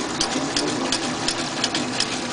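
Diaphragm jig running, its pulsing mechanism making a rapid, even mechanical clatter of about five beats a second.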